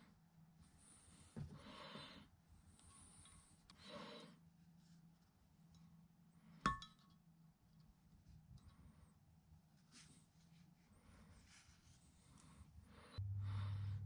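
Quiet handling sounds of string and felt wick being worked through a cast-iron casting, with one sharp metallic clink about halfway through, as a metal tool touches the metal. A low hum comes in near the end.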